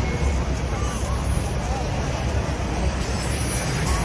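Busy city street: a steady low rumble of traffic and bus engines under the chatter of a crowd.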